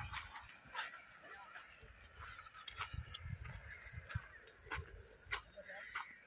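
A pair of bullocks hauling a heavy stone block across a field: scattered clicks and knocks with patches of low rumbling as the stone is dragged, and a short call near the end.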